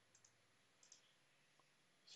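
Near silence broken by a few faint computer mouse clicks: two quick pairs of clicks in the first second and a single click later.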